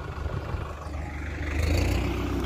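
Tractor diesel engine running steadily at a distance, a low, even hum.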